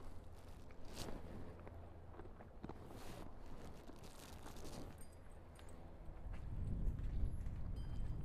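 Faint outdoor background with a steady low rumble, a few soft scuffs and clicks of footsteps on dirt, growing a little louder near the end.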